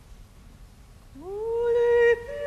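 After a quiet pause, a solo operatic voice enters about a second in, sliding up into a held note that grows louder.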